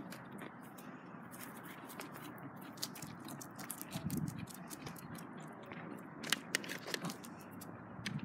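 Footsteps on dry grass and concrete, with irregular soft crunching clicks and a few sharper clicks a little before the end.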